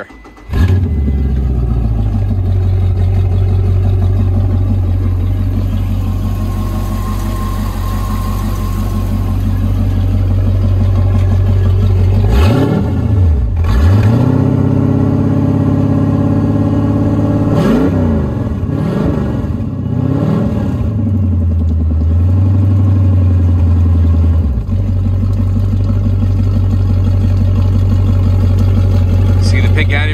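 Indmar 5.7 V8 inboard boat engine starting about half a second in and running while antifreeze is drawn through its cooling system for winterizing. Its pitch rises and falls twice in the middle as it is revved, then it settles back to a steady idle.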